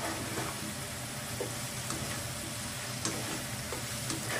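Pork pieces sizzling in rendered pork fat in a frying pan, stirred with a plastic spatula that scrapes the pan with a few sharp ticks, over a steady low hum.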